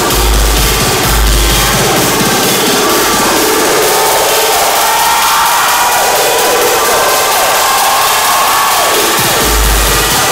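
Electronic dance music played loud over a club sound system. About three seconds in, the bass kick drops out for a breakdown carried by synth lines, and the beat comes back in just before the end.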